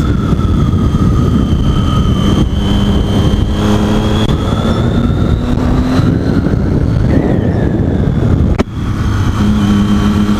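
Triumph Daytona 675's inline-three engine running while the motorcycle is ridden, mixed with heavy wind noise on the camera microphone. The engine note climbs gradually through the middle. A brief sharp break and drop in sound come near the end.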